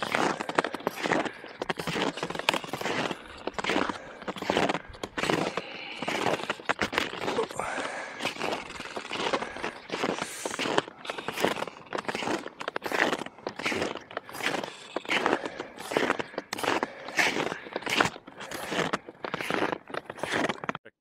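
Snowshoes crunching and scraping in snow, a steady walking rhythm of about two steps a second.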